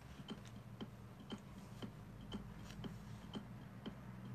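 Faint, regular ticking, about two ticks a second, over a low steady hum.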